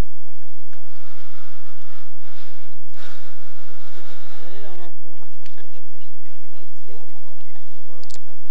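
Faint outdoor voices of spectators and players at a field game, with a steady hiss for the first few seconds.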